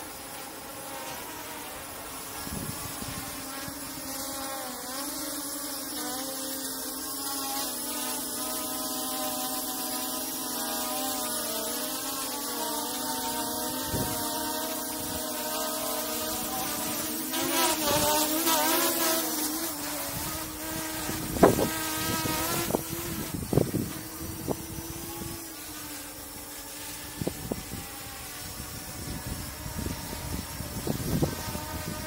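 Dragonfly KK13 quadcopter's brushless motors and propellers buzzing in flight, the pitch wavering as it holds position and manoeuvres, with a rising, unsteady whine about two-thirds through. A few sharp knocks come near the end.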